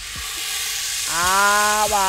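A steady hiss, joined about a second in by a man's voice holding one long low note.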